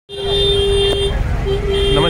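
A vehicle horn honking, one steady note held for about a second and then sounded again more briefly near the end, over a low rumble of traffic.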